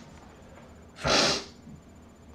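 A single sneeze about a second in, short and loud.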